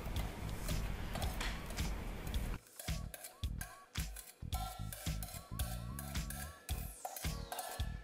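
Agar jelly liquid pouring from a pot into a plastic container, a steady splashing stream for the first two and a half seconds. Background music with short, spaced notes then carries on alone.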